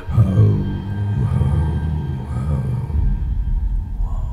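Dark horror-film score: a deep low drone comes in suddenly with a falling pitch, and a heavy bass rumble builds toward the end.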